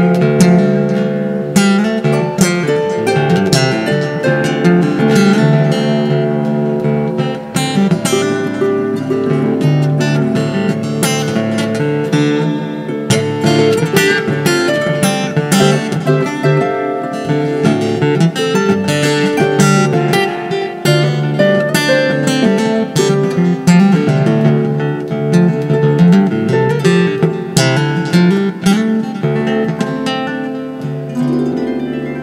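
Instrumental music: an acoustic guitar picked and strummed in drop D slack-key style, with a harp playing along.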